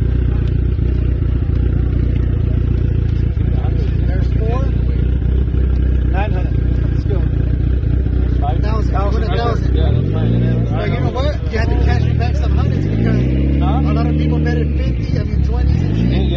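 Car engine running at a steady idle close by, then revving up and down repeatedly over the last several seconds, with people talking over it.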